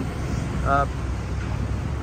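Mazda BT-50 pickup's diesel engine idling steadily, a low even sound.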